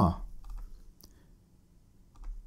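A few separate computer keyboard key clicks, a search term being typed in.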